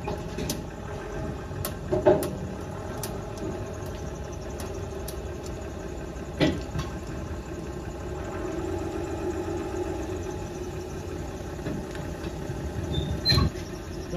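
A vehicle engine running steadily at idle, with scattered light clicks and three louder knocks: about two seconds in, midway, and near the end.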